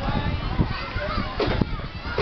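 Children's voices: several kids talking and calling out at once, overlapping.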